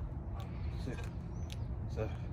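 A man's voice in short, strained bursts, about once a second, as he works through pull-ups, over a steady low rumble of wind on the microphone.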